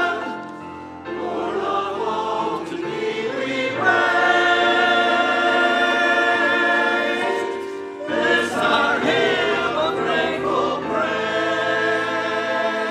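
Mixed choir of men and women singing with grand piano accompaniment, in sustained phrases with a short break between phrases about a second in and another about two-thirds of the way through.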